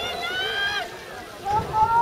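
Voices only: a high-pitched voice calls out in the first second, then after a short lull the race commentator's speech picks up again near the end.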